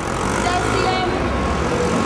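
Night-time city street: a steady rumble of road traffic with people's voices talking nearby.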